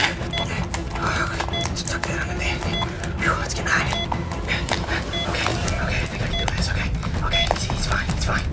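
Heart-monitor sound effect beeping steadily, one short beep about every 1.2 seconds, over a low hum. Crackling and rustling from tape being worked onto the doll fills the gaps.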